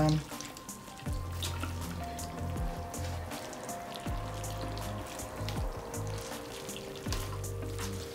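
Soft background music with long held notes. Under it, faint wet crackling and dripping as juice is squeezed by hand from a cheesecloth bag of cherry pulp.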